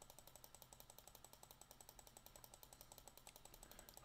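Faint, rapid computer-mouse clicking, about ten clicks a second, from the plus button being clicked over and over to step the font size up.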